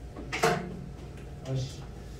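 Two short, wordless vocal sounds from a person: a sharp, loud one about half a second in and a softer, lower one about a second and a half in.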